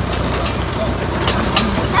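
Farm tractor engine running steadily while towing a loaded hay wagon.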